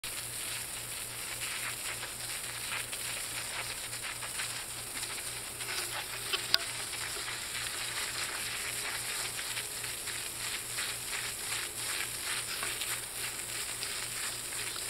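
Thin stream of water from a garden hose spattering on grass: a steady crackly hiss, with one sharp click about six and a half seconds in.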